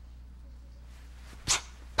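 A man's voice giving a short, sharp "pow" about one and a half seconds in, imitating the lash of a whip, after quiet room tone with a low steady electrical hum.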